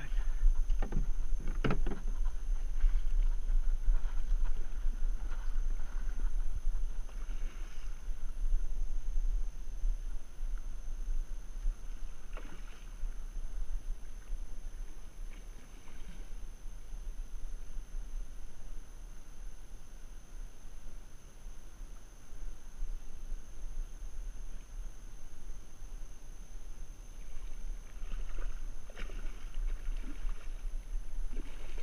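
Steady low rumble of wind on the microphone, with a few sharp knocks about one to two seconds in. A hooked musky splashes faintly at the surface now and then.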